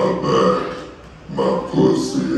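A man's guttural, growled vocal sounds into a microphone, in two phrases, the second starting about a second and a half in.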